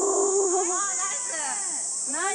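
Drawn-out, wordless vocal exclamations from people watching a golf ball in flight. The voices rise and bend in pitch and die away before the end, over the steady high buzz of summer insects.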